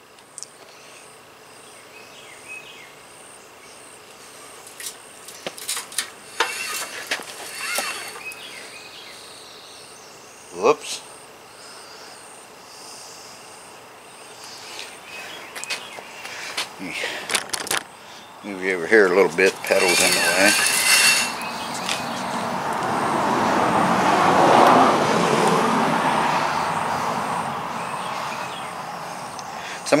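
Scattered light clicks and ticks of a rusty bicycle chain and crank being worked while the chain is oiled with transmission fluid. In the second half a vehicle passes, its noise swelling and then fading.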